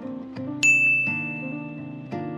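A single bright bell-like ding about half a second in, its clear high tone ringing on for nearly two seconds, over background music of plucked acoustic guitar.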